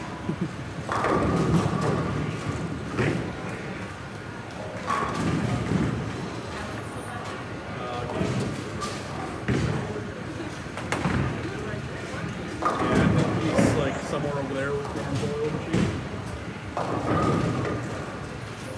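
Bowling alley noise: bowling balls hitting pins, a crash every couple of seconds, each followed by a rumble ringing through the large hall, over a background of voices.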